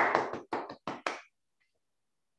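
Hand clapping: a short run of separate, unevenly spaced claps that stops a little over a second in.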